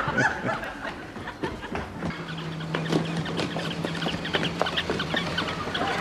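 A jumble of many squeaky toy dogs squeaking at once in short, high squeaks. A steady low hum joins in about two seconds in.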